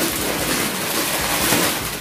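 Plastic bags crinkling and rustling as they are handled, a continuous rough noise.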